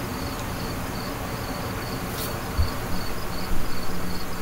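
Faint, evenly repeated high chirps, a few a second, over a steady low hum. There is a soft knock about two and a half seconds in, and a few small bumps near the end.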